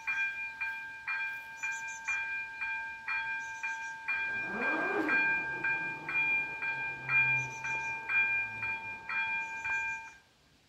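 Two AŽD ZV-02 electronic level-crossing bells ringing steadily at about two strokes a second, warning that a train is approaching. From about four seconds in, the whirr of the PZA-100 barrier drives lowering the booms joins the bells.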